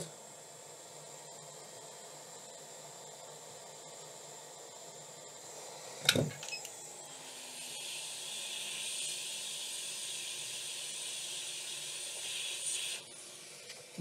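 A steady hiss of blown air, about six seconds long, drying water off a laptop motherboard after it was cleaned with a wet cotton bud. A short click comes just before the hiss starts.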